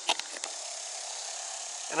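Steady high-pitched buzzing of insects in the summer trees, with a few faint clicks near the start.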